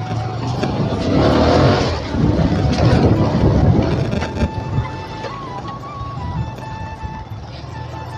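Motorcycle engine running while riding, with wind rushing over the microphone, loudest from about one to four and a half seconds in.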